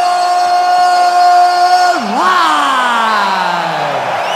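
Ring announcer's drawn-out shout of 'live': one long held note for about two seconds, then the voice swoops up and slides slowly down in pitch, over faint crowd noise.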